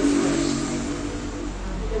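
A person's voice holding one long, steady drawn-out hesitation sound at an unchanging pitch, fading out about a second and a half in, over a low rumble.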